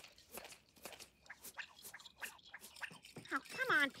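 Irregular small clicks and crackles as puppet line is let out from a reel, followed near the end by a man's voice.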